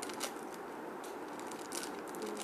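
A clear plastic packet crinkling as it is handled in the hands, with a scatter of short, light crackles.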